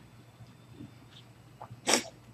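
A single short, sharp burst of breath near the end, after a few faint clicks in an otherwise quiet room.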